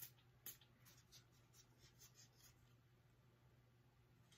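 Two quick, faint sprays from a small perfume sample atomizer, about half a second apart, followed by a few soft, light scratchy handling sounds. Very quiet overall.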